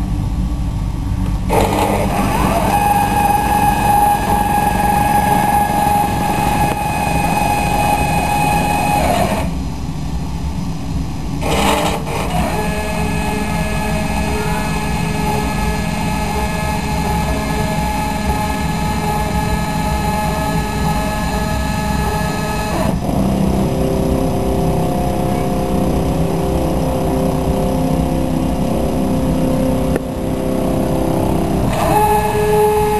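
Stepper motors of a homemade CNC milling machine whining as its axes move. The whine comes in stretches with a changing pitch: about eight seconds of one pitch after a short rising start, a pause, a brief burst, about ten seconds at another pitch, then a lower set of tones. A steady low rumble runs underneath throughout.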